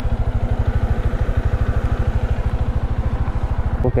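Bajaj Dominar 400's single-cylinder engine idling with a steady, rapid pulse.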